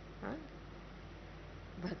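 A pause in a woman's talk into a microphone, leaving a steady low hum, with one brief faint voiced sound shortly after the start; her speech resumes near the end.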